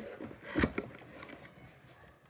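A small cardboard mailer box being handled and its flaps pulled open, with one sharp snap of cardboard just over half a second in, then faint rustling.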